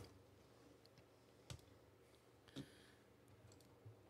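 Near silence broken by two faint clicks about a second apart, a computer mouse being clicked.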